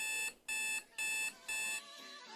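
Electronic alarm-clock beeping: four short, high beeps, about two a second, stopping just before the end.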